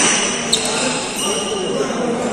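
Badminton rally on an indoor court: one sharp racket hit on the shuttlecock about half a second in, with high shoe squeaks on the court floor, and voices talking in the hall.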